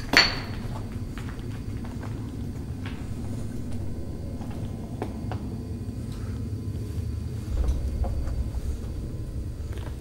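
A sharp knock just after the start, then steady low rumbling handling noise with faint scattered clicks and scuffs of footsteps on loose rubble in a tunnel.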